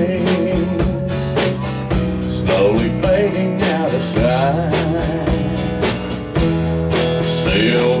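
A live country song: strummed acoustic guitar over a drum kit keeping a steady beat, with a man singing through a PA system.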